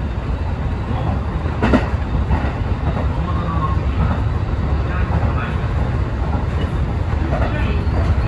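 Kintetsu express train running at speed, heard from inside the front car: a steady low rumble of wheels on rail, with one sharp knock about two seconds in.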